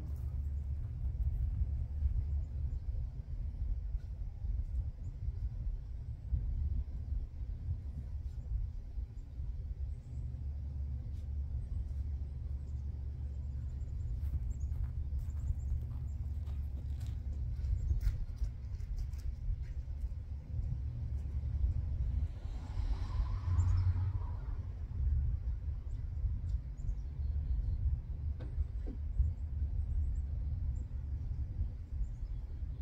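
Low, unsteady rumble of wind on the microphone outdoors, with scattered light clicks and taps of small parts being handled during the wiring work. About two-thirds of the way through there is a brief louder rush.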